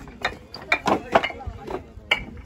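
Fired clay bricks clinking and clacking against each other as they are handled and stacked: several sharp knocks in quick, irregular succession.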